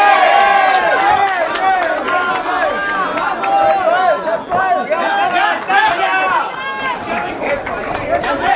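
Crowd of ringside spectators shouting and calling out, many voices overlapping at once without a break.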